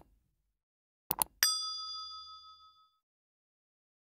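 Subscribe-button animation sound effect: a quick double mouse click about a second in, then a single bright bell ding that rings out for about a second and a half.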